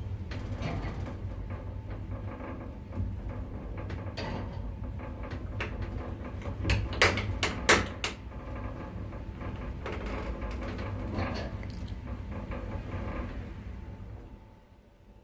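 2007 Lift Katowice passenger lift travelling upward, heard from inside the car: a steady low hum with scattered clicks and knocks, loudest in a quick cluster about halfway through. The running noise dies away at the very end as the car arrives and stops at the top floor.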